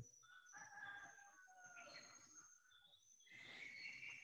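Faint rooster crowing, two long drawn-out calls, one early and one starting near the end, with thin high bird calls over near silence.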